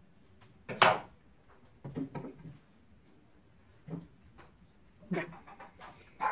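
A dog barking indoors: one loud bark about a second in, then a few quieter ones.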